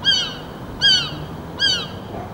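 A bird calling: three short calls that slide down in pitch, repeated at an even pace about every second.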